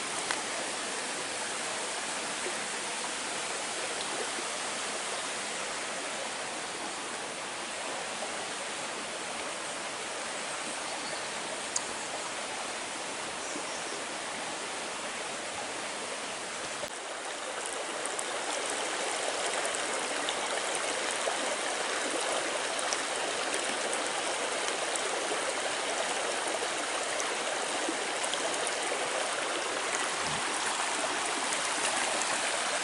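Small stream running and splashing over stones and woody debris, a steady rush of water that gets somewhat louder a little past the middle.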